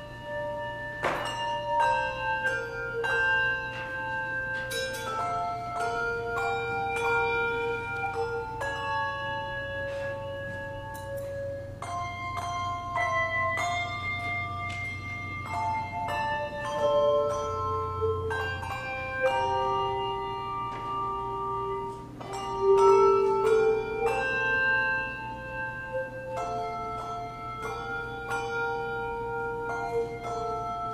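Handbell choir ringing a piece on brass handbells: struck notes that ring on and overlap, several sounding at once. A low steady hum lies underneath.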